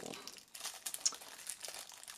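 A small clear plastic accessory bag crinkling as fingers work at it, trying to get it open: a run of light, irregular crackles.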